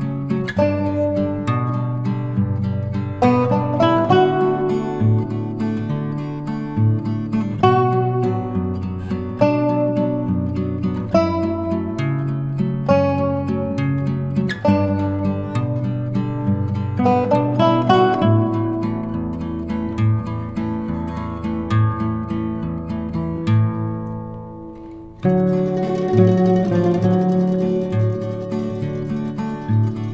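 Background instrumental music of plucked strings, like an acoustic guitar, playing a run of notes; it fades out about 24 seconds in and starts again a second later.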